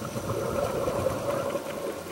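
Scuba diver's exhaled breath bubbling out of the regulator underwater, a crackling rush of bubbles lasting most of the two seconds.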